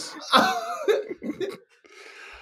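Men laughing in a few short, broken bursts that die away about a second and a half in.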